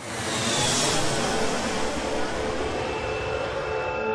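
A steady rushing whoosh, like a jet passing, starts suddenly and slowly loses its high hiss. Soft ambient music is held underneath it.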